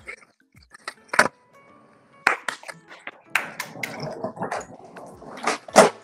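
Skateboard clacking on concrete as a switch pop shove-it is tried: a sharp pop about a second in, then several more clacks and wheel rumble, the loudest clack near the end, over background music.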